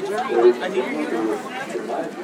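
Spectators' overlapping, indistinct chatter, loudest about half a second in.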